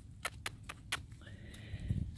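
Arab/Standardbred cross mare walking on leaf-littered dirt: a series of sharp, irregular crunching hoof steps, with a faint thin high-pitched call in the second half.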